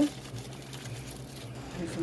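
Faint rustling of a plastic soda ash packet as it is squeezed and shaken to get the powder out through a small hole, with a low steady hum underneath.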